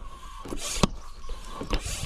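Electric SUP pump running, inflating an inflatable paddleboard through its hose: a steady motor hum with a sharp click about once a second.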